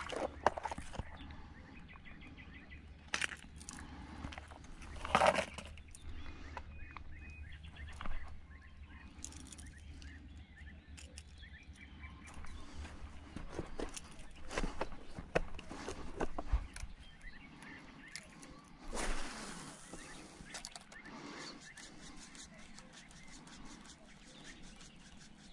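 Intermittent small clicks, knocks and rustles of hands handling a fishing lure and tackle, with faint bird chirps.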